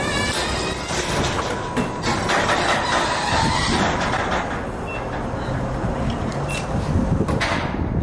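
Steady outdoor background noise: a low engine rumble with a windy hiss.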